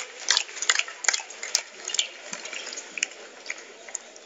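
Scattered applause from the arena crowd, thinning out and growing fainter.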